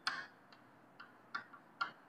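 Chalk on a chalkboard while writing: about five short, sharp taps and scratches in two seconds, as each stroke of the letters hits the board.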